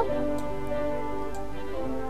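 Background music with held notes and a light ticking beat.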